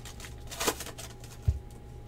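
A foil Panini Prizm trading-card pack being torn open by hand, with one short crinkling rip about half a second in. A dull thump follows about a second and a half in.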